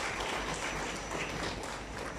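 Audience applauding, a dense patter of many hands clapping that slowly fades.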